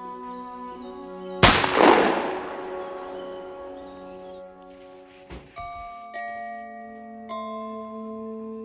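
A single rifle shot about a second and a half in, sudden and loud, its echo dying away over about two seconds, over sustained background music. Bell-like music notes follow in the second half.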